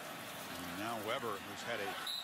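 A man's voice on a college football TV broadcast, starting about half a second in, over steady stadium crowd noise.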